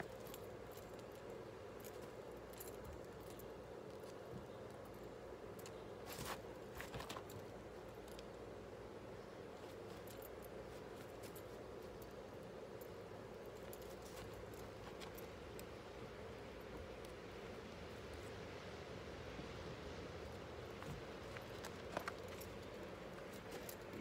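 Faint steady background hum, with a few brief clicks and jingles about six seconds in and again near the end, from keys hanging at a belt while a cloth is wiped over car paint.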